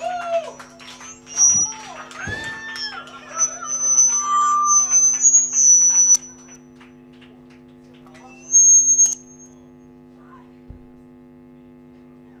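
Steady electric hum from a band's stage amplification between songs. Shouted voices come in the first few seconds, then high piercing whistles or squeals, the loudest briefly about eight and a half seconds in.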